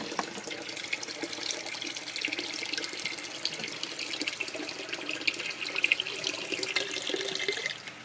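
Water pouring from one plastic bucket into another, splashing into the part-filled bucket as it fills; the pour stops just before the end.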